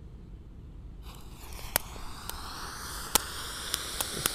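Super-jumbo ground fountain firework catching about a second in and spraying sparks with a hiss that builds, broken by a few sharp crackles.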